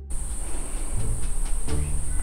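A steady high-pitched electronic hiss with a whine in it, from the recording's own noise. It starts abruptly as the background music cuts off, with a few faint clicks over it.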